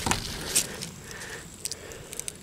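Faint handling noise as a ballistics gel block is shifted about on a blanket: soft rustling, with a couple of light taps about half a second in and near the end.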